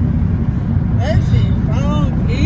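Steady low road and engine rumble inside a moving car's cabin, with short snatches of a woman's voice about a second in and near the end.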